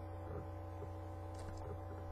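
Steady electrical mains hum, with a few faint soft sounds of paper card tags being slid and handled.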